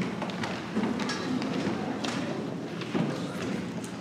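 Room noise in a large hall: a few soft thumps and taps, the strongest right at the start, over faint murmuring.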